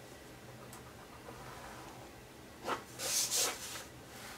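Plastic-handled embossing stylus drawn along a groove of a craft scoring board, pressing a score line into cardstock: a brief scratchy scrape about two and a half seconds in, then a longer, louder scrape just after.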